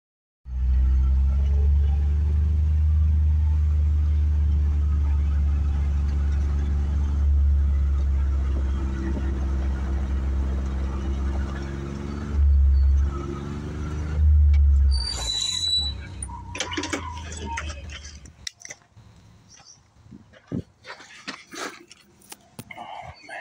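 Small utility vehicle's engine running with a steady low drone, surging louder twice near the middle. Later the engine sound drops away and is replaced by rustling and brushing through tall grass and weeds.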